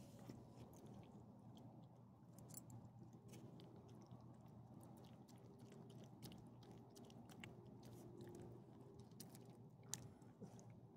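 Small dog chewing and licking scraps of ham off concrete: faint, quick, irregular wet smacks and clicks of mouth and tongue.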